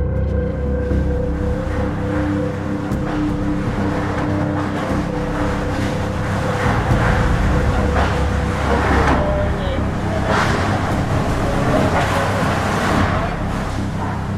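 Hurricane Maria's Category 5 winds picked up on a phone's microphone: a heavy, steady rushing noise that swells in louder gusts through the second half.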